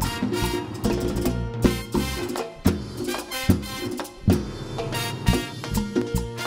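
Live Latin dance band playing an instrumental mambo section: brass and keyboards over timbales, congas and a cowbell struck with a stick, with heavy accents about once a second.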